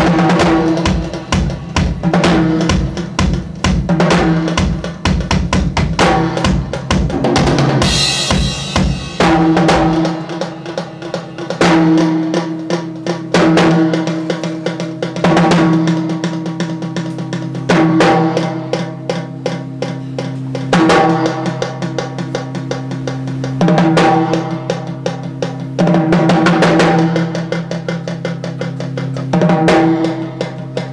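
Drum kit played live: a fast, dense run of bass-drum and snare hits for about the first ten seconds. Then a steady low sustained note takes over, with heavy hits and ringing cymbal crashes every two to three seconds.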